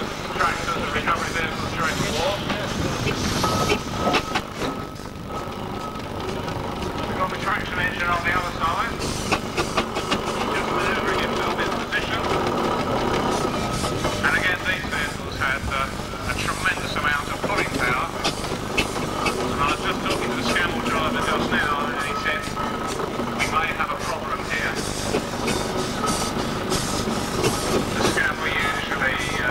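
Steam traction engine running, its flywheel turning, with people talking over it. A thin steady high tone sounds for a couple of seconds now and then.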